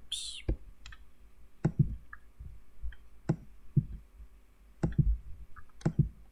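Scattered clicks of a computer mouse and keyboard, about eight in all, spaced irregularly, as a notebook cell is typed and run.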